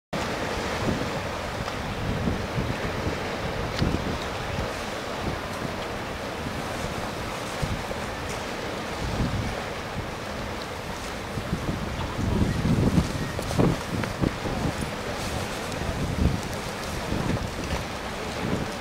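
Wind buffeting the microphone in irregular low gusts, strongest about twelve to fourteen seconds in, over a steady wash of sea water against shoreline rocks.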